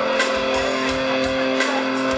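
Live punk-rock band playing electric guitar and drums, the guitar holding a steady ringing note with a few drum hits under it, recorded from the crowd on a camera microphone.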